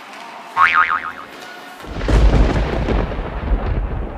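Thunder sound effect: a sudden crackle, a brief warbling tone about half a second in, then a loud deep rumble of thunder rolling from about two seconds in.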